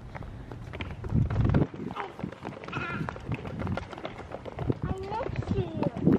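A small child's short wordless vocal sounds, with clicks and scuffs from handling and steps, and a low rumble about a second in.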